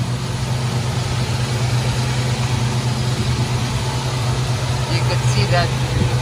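1967 Chevrolet C10 pickup's V8 engine idling steadily, a low even hum with no change in speed.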